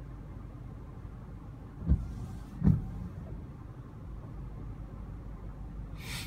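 Steady low hum inside a parked car's cabin, with two brief soft thumps about two and two-and-a-half seconds in.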